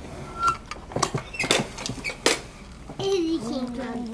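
Several sharp plastic clicks of a children's pop-up toy, its lids being pressed and snapped shut one at a time. A small child's voice comes in near the end.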